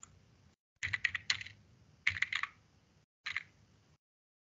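Typing on a computer keyboard: three short runs of keystrokes about a second apart, with the sound cutting out completely between them.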